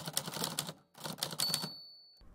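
Typewriter sound effect: two quick runs of clacking key strikes, then a single high ring of the carriage bell near the end.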